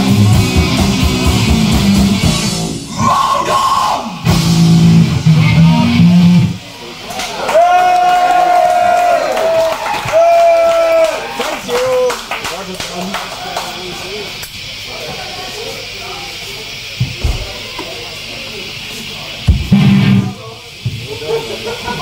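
Black metal band playing live on a raw bootleg tape recording, distorted guitars and drums, with the song ending about six seconds in. Then two long held yells and a low crowd hubbub follow, with a couple of thumps near the end.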